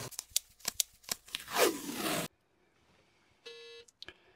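Release liner being peeled off the adhesive back of a MAUS Stixx fire-suppression strip: crackling, rasping peel noise with a few sharp clicks, cutting off abruptly about halfway through. A short buzzy beep-like tone follows near the end.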